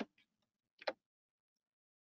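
Two faint short clicks, the first at the very start and the second just under a second later, as a presentation slide is advanced; otherwise near silence.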